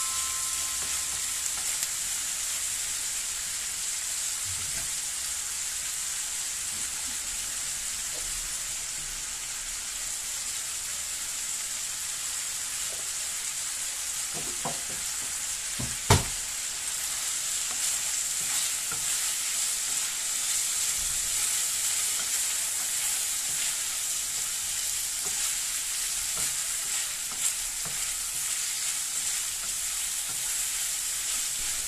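Chicken sausage pieces and sliced onion sizzling steadily in oil in a frying pan as they brown, stirred with a wooden spoon. There is a sharp knock about halfway through.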